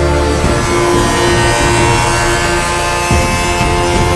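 Background music: held synth chords over a stepping bass line.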